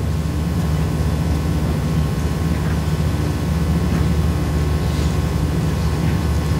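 A steady low rumble with no speech over it, even in level throughout.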